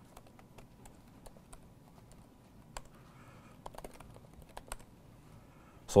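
Laptop keyboard being typed on: irregular faint key clicks, busier in the second half, as terminal commands are entered.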